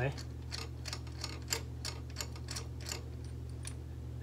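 Light, irregular clicking, about two or three clicks a second, from a spark plug socket and extension being turned by hand to back a long-threaded spark plug out of the cylinder head. A steady low hum runs underneath.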